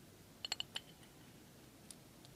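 A quick run of about four light, sharp clicks about half a second in, and one faint click near the end: small metal engine parts knocking together in the hands while a tube is pushed onto the combustion chamber.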